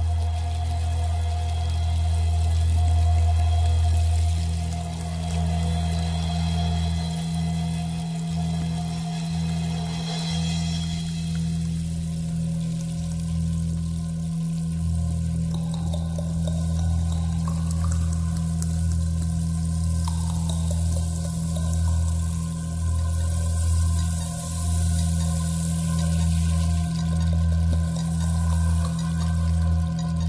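Instrumental introduction to a song: steady held low bass notes under long sustained higher tones, with no singing. About halfway through, the low notes start to pulse in an uneven beat.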